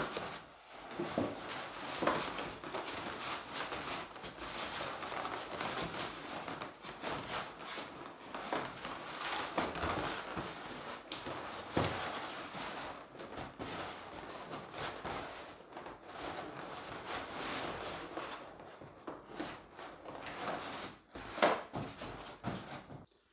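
Inflated latex balloons rubbing and knocking against each other as a cluster is twisted and pressed together by hand, with many small scattered clicks.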